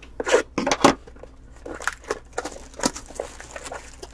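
Plastic shrink-wrap being torn and crinkled off a sealed box of trading cards, in a few short rips.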